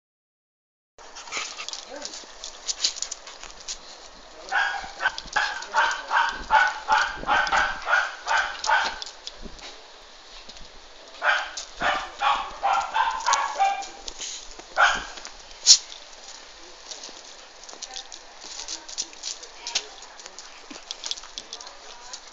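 Dogs barking during rough play: two runs of quick, repeated barks a few seconds apart, then a single sharp bark.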